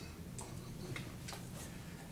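Quiet room tone with a low steady hum and a few faint, irregularly spaced clicks.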